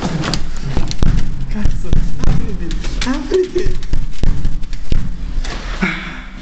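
Loud, jumbled thumps and knocks over a rumbling din, as of a scuffle with the camera being knocked about. A short vocal cry comes about three seconds in.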